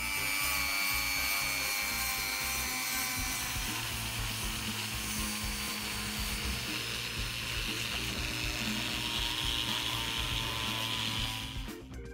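Handheld rotary tool with a small abrasive wheel running steadily against a cast metal coin, a whirring rub as the casting is cleaned up. It stops shortly before the end.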